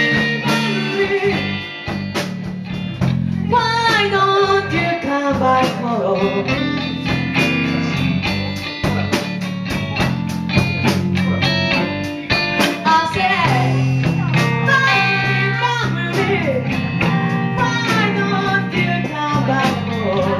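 Live band playing: a woman singing into a handheld microphone over electric guitar and a drum kit, with a steady cymbal beat.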